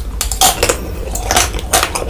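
Close-miked crunching and chewing of a chocolate-coated ice cream bar: a run of crisp cracks as the hard chocolate shell breaks, over a steady low hum.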